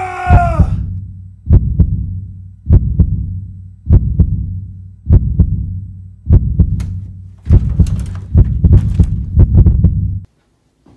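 Heartbeat sound effect: deep double thumps about every 1.2 seconds over a low hum, with the beats coming closer together near the end.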